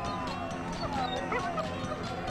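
A dog yipping a few times over background music.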